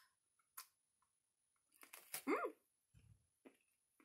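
A woman chewing a chocolate truffle with faint mouth sounds, a small click about half a second in, then a short appreciative "mm" hum that rises and falls in pitch. A soft low thump follows near three seconds.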